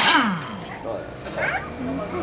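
A cordless power tool on a car's wheel stopping: its motor whine falls away quickly in the first moment, then it is quieter with faint voices.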